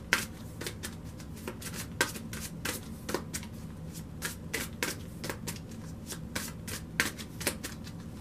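Tarot deck being shuffled overhand by hand: an irregular run of short card taps and slaps, a few a second, some louder than the rest.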